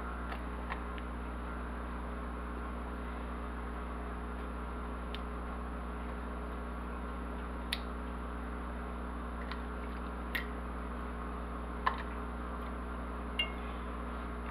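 Pineapple rings being laid into a cast iron skillet of melted butter and brown sugar: a handful of faint, scattered clicks and soft squishes over a steady low background hum.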